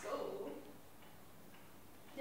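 A voice trailing off at the start, then quiet room tone with a few faint ticks.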